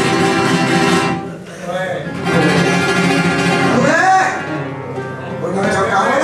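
Flamenco cante: a woman singing to flamenco guitar. The guitar runs throughout, and her voice comes in with long rising-and-falling phrases from about two seconds in.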